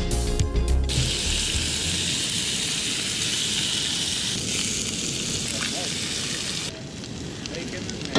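The last of a music track in the first second, then bacon frying in a cast-iron skillet on a propane camp stove: a steady sizzle that drops off sharply about seven seconds in.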